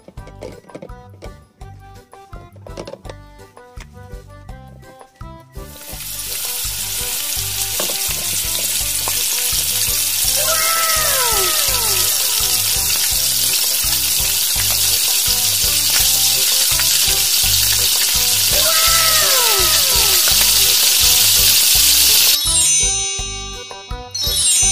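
A frying sizzle sound effect for pretend cooking: a loud, steady hiss that starts about six seconds in and cuts off near the end. It plays over light children's background music, with two short swooping tones partway through.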